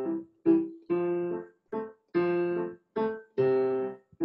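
Roland digital piano playing a light waltz-time vamp on a chord progression. Short, detached chords come about two a second, each released cleanly before the next.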